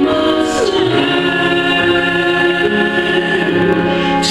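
Gospel song with choir singing, sustained held notes that slide down in pitch about a second in, over steady accompaniment.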